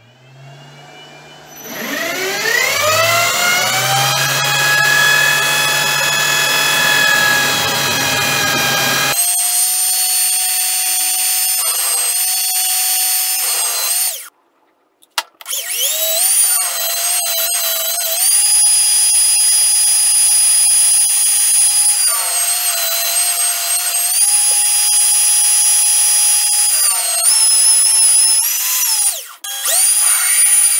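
Small electric power tool clamped on the lathe's tool post, spinning up with a rising whine and then running steadily. It stops briefly about halfway and restarts, its pitch dipping and recovering several times.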